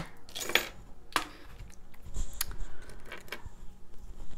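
Small metal charms clinking in a wooden tray as a hand picks through them, heard as a few separate sharp clicks a second or so apart.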